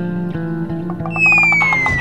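Background film music with plucked guitar over held notes. About a second in, a loud whistle-like tone glides slowly downward.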